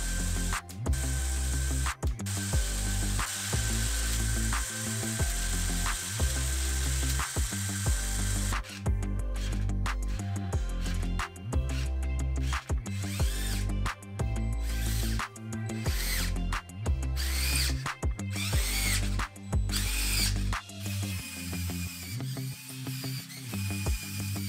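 Small electric motors driving the plastic gear trains of a brick-built Technic car chassis, whirring during a function test, under background music with a deep, stepping bass line.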